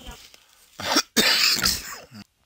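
A person coughing: a short cough a little under a second in, then a longer cough.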